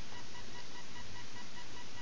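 Steady background hiss from the recording's microphone, with a faint, steady high-pitched whine that fades out about three-quarters of the way through. No distinct handling noise stands out.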